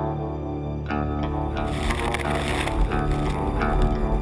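Background music, with a brighter swell of hiss building about halfway through and easing off after about a second.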